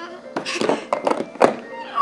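Plastic toy blocks knocking and clacking as a toddler handles them, a quick run of several hollow knocks, with faint music underneath.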